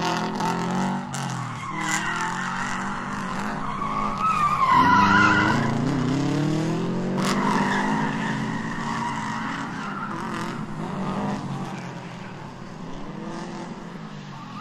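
A car engine revving, its pitch climbing and falling, with tyres squealing over it; the loudest rev and squeal come about five seconds in, and the sound eases off toward the end.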